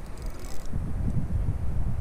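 Wind buffeting the microphone in gusty low rumbles.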